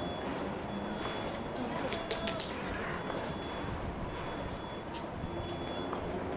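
Low murmur of distant voices over steady outdoor ambience, with a short cluster of sharp clicks about two seconds in.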